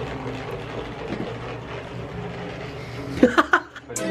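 Handheld percussion massage gun running with a steady low buzz as it is pressed against the thigh. A brief voice-like sound comes about three seconds in.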